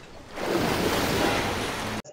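Sea water washing and sloshing, a noisy wash that swells up about half a second in and holds steady.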